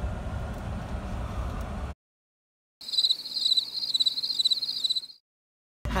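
Car cabin rumble that cuts off suddenly into silence. Then comes an edited-in crickets sound effect: rapid high-pitched chirping for about two seconds, the stock gag for an awkward silence. The cabin rumble returns near the end.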